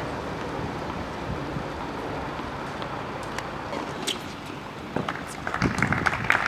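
Outdoor tennis-court ambience: a steady murmur of background noise, with a cluster of sharp ticks and short high-pitched sounds starting near the end.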